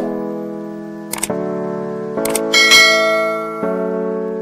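Background music with held chords. Two short clicks come about one and two seconds in, followed by a bright bell chime that rings and fades: the sound effects of a subscribe-button and notification-bell animation.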